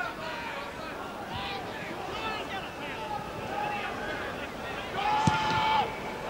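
Football crowd on the terraces, many voices shouting and calling over each other. About five seconds in comes a sharp thud of the ball being kicked, with a loud held shout going up from the crowd on the kick.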